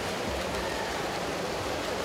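Steady, even wash of indoor swimming-pool ambience: freestyle swimmers splashing through the water, blended with the hall's crowd murmur.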